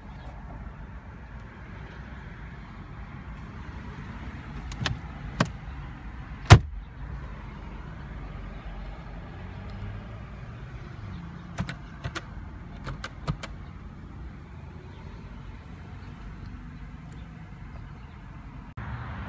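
Low steady hum inside a 2015 Chevrolet Cruze's cabin, with a scattering of sharp clicks from its dashboard and mirror buttons being pressed. There are three clicks around five to six and a half seconds in, the last the loudest, and a quicker cluster of clicks about twelve to thirteen seconds in.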